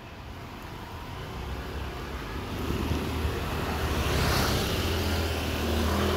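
A motorbike approaching along the road and passing close by, its engine and tyre noise growing louder from about two seconds in and loudest in the second half.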